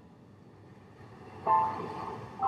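Background music for a slideshow: a soft passage, then a chord of several notes struck about one and a half seconds in, ringing and fading.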